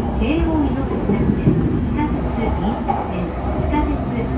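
Steady low rumble of a Yamanote Line commuter train running, heard from inside the car. A recorded onboard announcement voice carries on over it.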